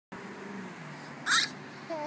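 Toddlers' voices: a faint low murmur, then a brief high-pitched squeal of laughter about halfway through, and a child's voice starting up near the end.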